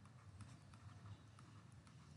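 Near silence: faint room tone with a few soft, short taps of a stylus on a writing tablet as handwriting is drawn.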